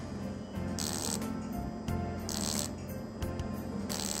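Background music with a steady low accompaniment, crossed by a short hissing burst about every second and a half.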